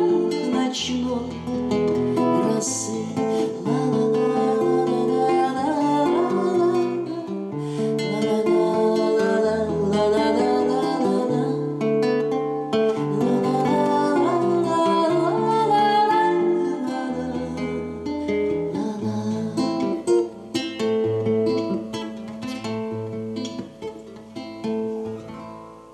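Classical nylon-string guitar playing the instrumental close of an author's song, with a wordless sung vocal line over much of it. The playing thins out and grows quieter near the end.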